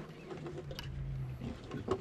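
Faint, steady low hum of a boat motor, with a few light clicks as a spinning reel is cranked.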